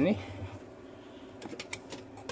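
Quiet room tone with a few light, quick clicks about a second and a half in.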